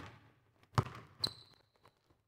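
A basketball dribbled on a hardwood gym floor: two sharp bounces a little under half a second apart, the second joined by a brief high squeak, typical of a sneaker sliding on the court.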